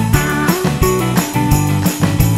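Background music with a steady beat of about four strokes a second.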